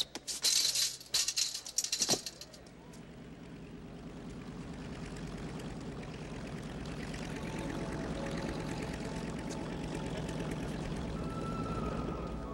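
A chain-link fence rattling and clinking in several loud bursts as someone climbs over it, during the first two seconds. Then a swell of film-score music with sustained tones builds steadily to the end.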